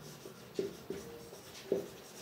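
Marker pen writing on a whiteboard: a faint scratching stroke, with three short squeaks of the felt tip, about half a second in, about a second in, and near the end.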